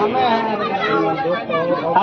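Speech only: talking voices with crowd chatter.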